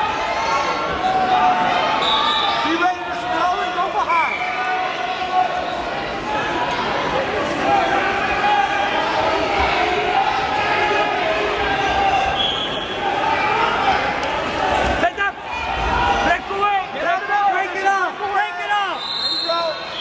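Many voices talking and shouting at once in a large gym hall, with occasional low thumps, loudest around three-quarters of the way through.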